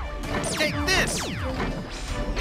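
Cartoon laser-gun zaps: quick steeply falling 'pew' sweeps, fired in pairs about half a second and a second in, from a wrinkle laser gun, over background music.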